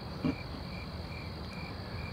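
Cricket chirping: short, evenly spaced high chirps about two to three times a second over a low, steady background hum.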